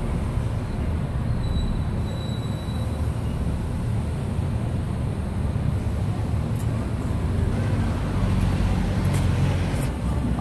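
Steady low rumble of city street traffic, with a few faint light ticks near the end.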